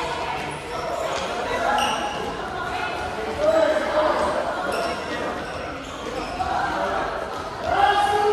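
Volleyballs bouncing and being struck on a gym floor in a busy drill, over the overlapping voices and calls of many players, all echoing in a large sports hall.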